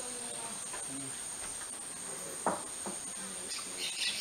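Steady high-pitched drone of a tropical forest insect chorus, with a sharp knock about two and a half seconds in.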